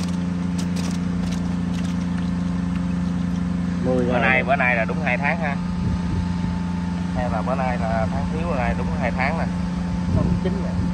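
A motor running with a steady low hum, joined twice by short bursts of a high voice, about four seconds in and again about seven seconds in.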